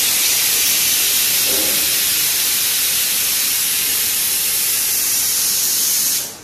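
Stovetop pressure cooker whistling: a loud, steady hiss of steam venting from the weight valve, stopping suddenly at the end.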